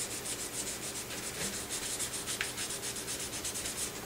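Hand sanding with a small sanding pad on a harp's varnished wooden pillar: quick, even back-and-forth strokes, about four or five a second. The sanding is rubbing off paint marks that sit on top of the finish.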